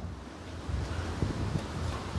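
Low, unsteady rumble of wind noise on a handheld microphone, with a faint hiss.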